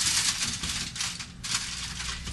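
Heavy-duty aluminium foil crinkling as it is handled, with a brief lull partway through.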